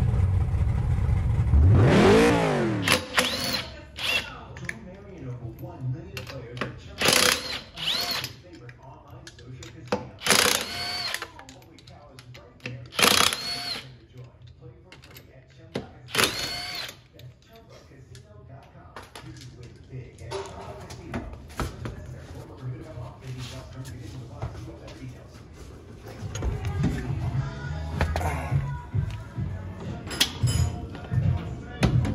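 Short intro music with a falling whoosh, then a cordless impact wrench firing in about seven short bursts, its motor whining up and down each time, as lug nuts are run off a wheel.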